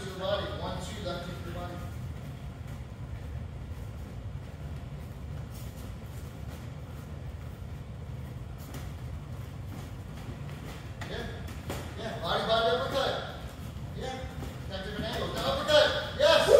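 A steady low room rumble in a large gym, with indistinct voices at the start, again after about eleven seconds, and just before the end, and a few faint knocks from the sparring in between.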